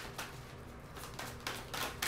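A deck of oracle cards being shuffled by hand: soft, irregular flicks and taps of the cards, a few each second.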